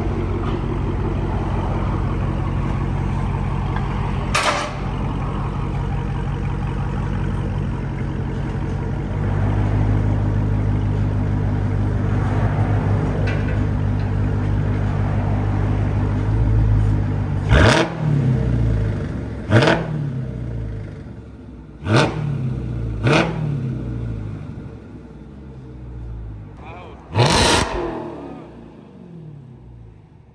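Supercharged 6.2-litre HEMI V8 of a 2023 Dodge Charger SRT Hellcat Redeye Jailbreak, with its mid muffler deleted, idling loudly and then revved hard five times in the last third. Each rev climbs sharply and falls back, and the engine settles down after the last one.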